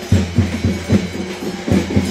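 Drums beaten in a fast, steady rhythm, about four deep strikes a second.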